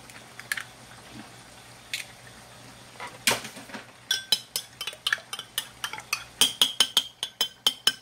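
A few separate sharp taps, then a metal spoon beating raw eggs in a ceramic bowl, clinking against the bowl about four times a second from about four seconds in.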